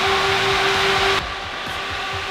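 Two electric radiator thermo fans running flat out: a steady rush of air with a held hum. The rush drops away suddenly a little over a second in.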